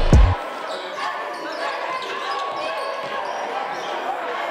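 A music track with a heavy beat cuts off just after the start, leaving live gym sound: a basketball being dribbled on a hardwood court under the murmur of crowd voices.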